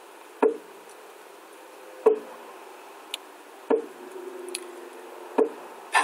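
A drum struck in a slow, steady beat: four single strokes about one and a half seconds apart, each ringing briefly.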